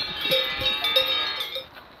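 A large cowbell hung from a cow's leather collar clanks several times as the cow moves, each strike ringing on; the ringing cuts off near the end.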